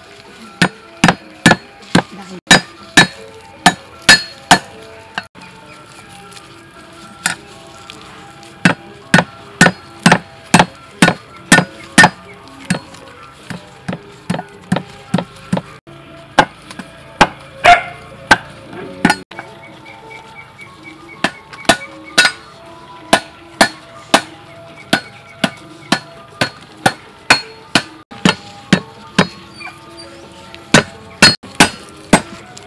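A cleaver chopping lemongrass stalks on a thick wooden chopping block: sharp knocks about two a second, in runs broken by short pauses. Soft background music plays underneath.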